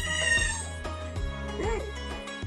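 Background music with a steady bass line. Right at the start a brief high-pitched whine that falls slightly over about half a second, and a shorter pitched sound near the end.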